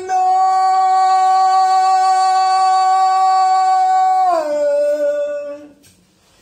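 A man singing one long held note that slides down about four seconds in to a lower note, held briefly before he stops.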